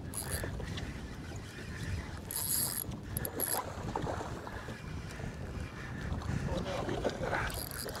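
Fishing reel working against a hooked redfish, with short bursts of reel noise from its drag and cranking, about two, three and seven and a half seconds in. Under it, a steady low wash of water against the boat hull and wind.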